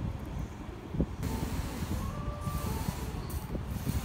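Soldering iron working a stained-glass solder seam, the flux sizzling in a hiss that starts about a second in, over a steady low rumble of background noise.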